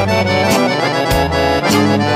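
Accordion-led folk band playing an instrumental passage with a steady beat and no vocals.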